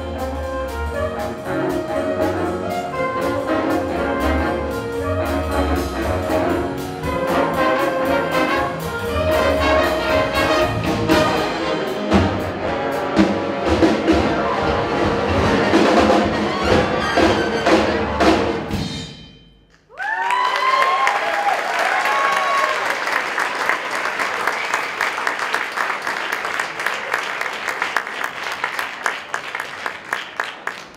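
Jazz big band of saxophones, trumpets, trombones, piano, upright bass and drums playing at full strength, then ending with a sudden cutoff about two-thirds through. Audience applause with a few cheers follows to the end.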